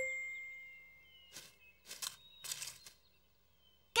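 Cartoon sound effects: a single bright chime struck at the start and ringing away over about a second and a half, then three soft swishes.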